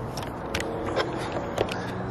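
Low background noise outdoors: a faint steady hum with a few light clicks scattered through it.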